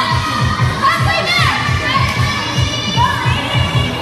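A group of women cheering and whooping loudly, over dance music with a steady beat.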